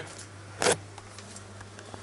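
Steady low hum of a clothes dryer running in the background, with one short hissing sound about two-thirds of a second in.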